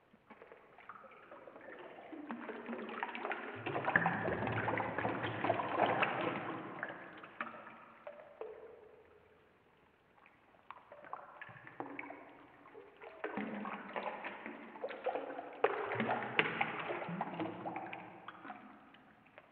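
Running tap water and hands splashing in a sink, played back slowed to 20% speed, so it sounds dull and drawn out. It swells and fades twice.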